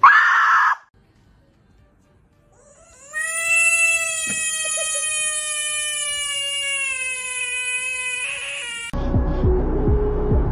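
Cat's long drawn-out meow, held at a steady high pitch for about six seconds and sagging slightly toward the end, after a brief cry at the very start. Music comes in near the end.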